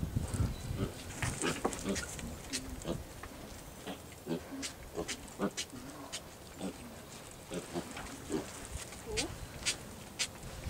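Farm animals making short, low calls, scattered among many sharp clicks and light rustling throughout.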